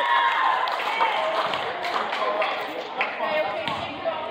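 Voices of players and spectators in a gymnasium, echoing, with a couple of sharp knocks about one and three seconds in.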